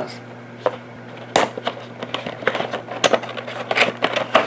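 Cardboard figure box being cut open and its top flap pried up: a string of sharp cardboard clicks and crackles, the loudest about a second and a half in, over a faint steady low hum.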